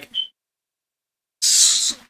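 The tail of a man's spoken word cuts off, followed by about a second of dead silence. Near the end comes a short breathy hiss from him, like a sharp breath drawn in through the teeth.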